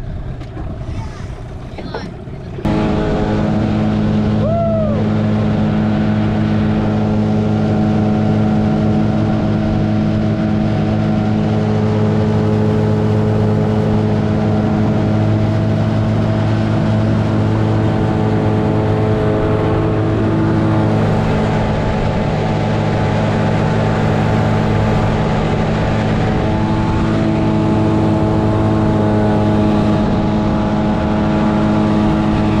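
Small tiller outboard motor running steadily at cruising speed. It comes in suddenly about two and a half seconds in, after a few seconds of quieter sounds, and holds one even pitch throughout.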